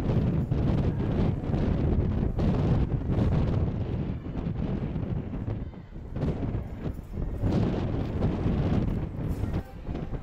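Wind buffeting the camera microphone: a gusting low rumble that eases briefly about halfway through.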